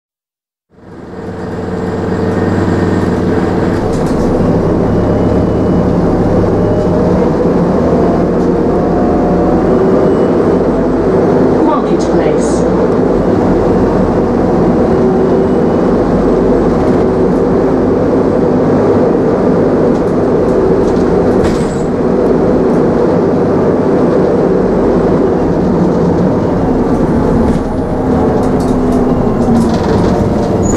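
Inside an Optare Solo single-deck bus on the move: its diesel engine and drivetrain run steadily, with a slowly shifting pitch under road rumble and a few brief clicks and rattles. It comes in sharply about a second in.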